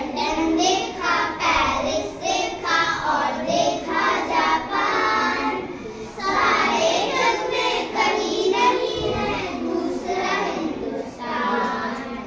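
A group of young children singing together in phrases, with short breaks between lines.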